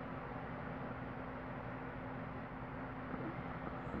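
Steady background hiss with a constant low hum, unchanging throughout, with no distinct event.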